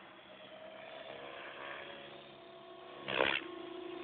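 Electric Compass 6HV radio-controlled helicopter flying 3D over the water: a steady whine from its motor and rotors, with a brief loud rush of rotor blade noise about three seconds in.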